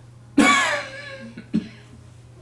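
A man coughs once, a sudden loud voiced cough about half a second in that dies away within half a second.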